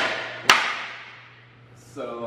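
Wooden Revbalance balance board deck slapping down on a concrete floor: one sharp smack about half a second in, echoing in a hard-walled hallway and dying away over about a second.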